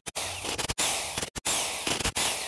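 Corded electric impact wrench running on a car wheel's lug nuts to take the wheel off: a harsh, even noise broken by several brief gaps.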